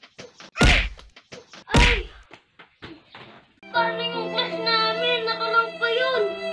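Two heavy thuds about a second apart, then several lighter knocks, then music with long held notes that starts about two-thirds of the way through.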